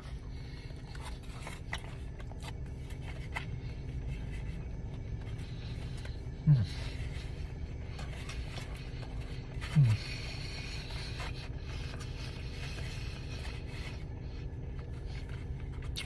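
A man chewing a mouthful of carne asada taco with faint, scattered mouth clicks, the steak dry and chewy. A steady low hum of the car interior runs underneath, and he gives two short falling 'hmm' murmurs, about six and a half and ten seconds in.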